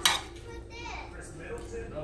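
A metal spoon clinks once, sharply, against a dish at the start, as ground turkey taco meat is spooned out.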